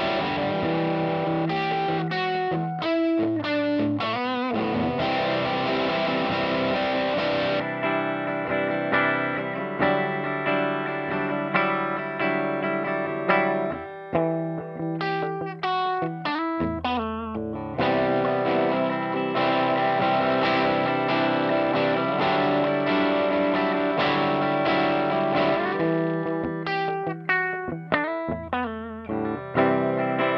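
Electric guitar through a Mission Engineering Delta III Tri-Stage transistor distortion pedal, playing distorted held chords broken by quicker runs of single notes. It is first on a "Screamer" setting, then partway through on a "Mid Boost" setting.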